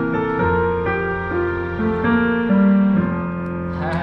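Roland HP205 digital piano being played: a slow melody over held chords, the notes sustaining steadily rather than dying away, stopping shortly before the end.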